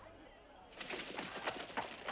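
Horse hooves clopping as the horse moves off at a walk, a quick run of sharp knocks starting just under a second in.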